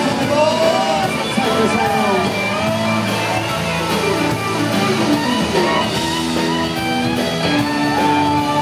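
Live country band playing an instrumental passage on electric and acoustic guitars, bass, keyboard and fiddle, with a lead line of sliding, bending notes in the first couple of seconds.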